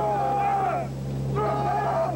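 Men singing a pagode together in long held notes, with a short break midway, over the steady low drone of a C-130 Hercules's turboprop engines heard inside the cargo hold.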